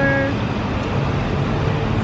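Steady low rumble of road traffic from cars.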